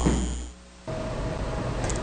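The last of a man's word, over a steady low electrical hum that cuts off about half a second in. After a brief dip, a steady low hiss with a faint hum runs from about one second in: the room tone of a new audio segment after an edit.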